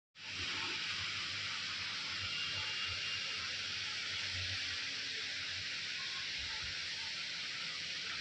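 A steady, even hiss with a few faint low thumps underneath.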